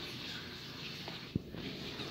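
Low room tone with one short, sharp click about a second and a half in.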